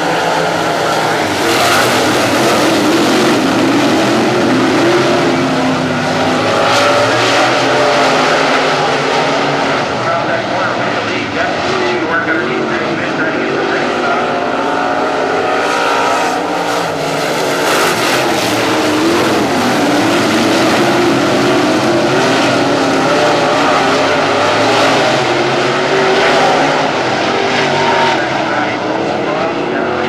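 A pack of dirt-track Sportsman race cars running at race pace, their V8 engines rising and falling in pitch as they go through the turns.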